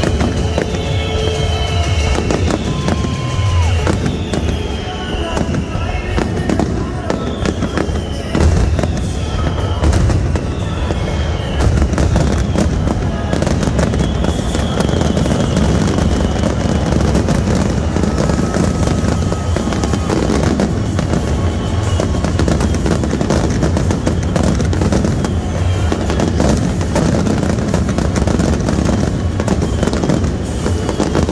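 Aerial fireworks shells bursting in quick succession, with booms and dense crackling, while music plays along.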